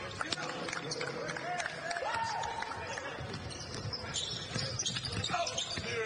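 Basketball game sounds on a hardwood court: the ball bouncing as it is dribbled up the floor, with scattered short knocks from play and voices on the court.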